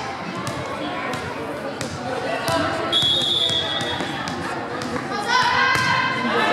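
A volleyball bounced on a hardwood gym floor, a knock roughly every half second, under a steady chatter of voices. About three seconds in comes a short referee's whistle for the serve, and the voices grow louder near the end.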